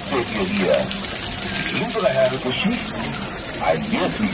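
Water splashing steadily out of the cut-off rear of a model horse in a fountain display, with a voice speaking briefly at times over it.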